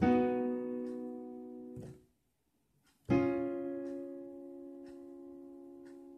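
Electronic keyboard on a piano voice playing a B major triad (B, D-sharp, F-sharp), chord four of F-sharp major. It is struck and held about two seconds, then cut off, and after a second of silence it is struck again and left to die away.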